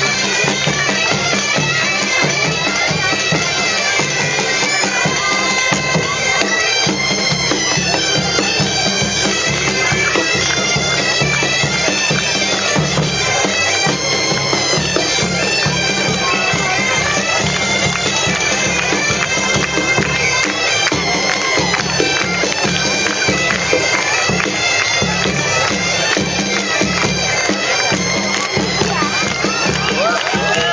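Galician bagpipes (gaitas) playing a traditional tune without a break, a stepping melody over a steady low drone.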